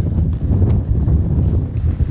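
Strong wind buffeting the microphone: a loud low rumble that rises and falls.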